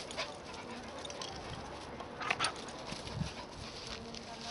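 Dogs playing together, with a few short, sharp yips. The loudest two come in quick succession about two and a half seconds in.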